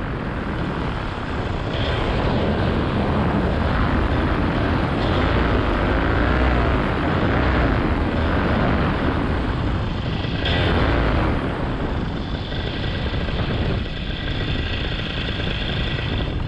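Paramotor engine and propeller running steadily under heavy wind noise on the microphone during a low descent toward landing, with a pitch that wavers through the middle.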